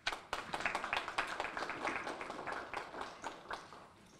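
A small group of people clapping by hand, a brief round of applause that thins out and fades near the end.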